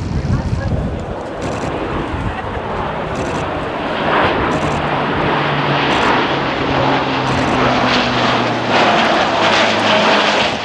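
Lockheed C-130J Super Hercules with four turboprop engines and six-blade propellers, making a low pass. Its roar swells as it approaches, and a steady low propeller hum comes in about four seconds in. It is loudest near the end, as the aircraft passes overhead.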